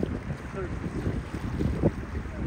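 Wind buffeting the microphone aboard a moving boat, a dense, uneven low rumble, with brief snatches of a voice.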